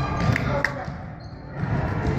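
A basketball being dribbled on a hardwood gym floor: repeated bounces, pausing briefly in the middle.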